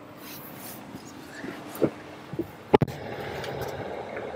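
Knocks and bumps of someone climbing into a car's rear seat: two soft knocks, then a sharp double knock about three-quarters of the way through, over quiet cabin hiss.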